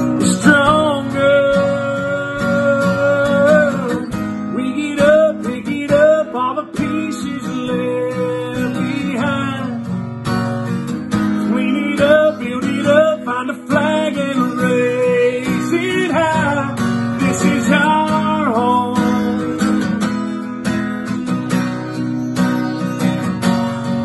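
A man singing, holding long sustained notes, over a steadily strummed acoustic guitar.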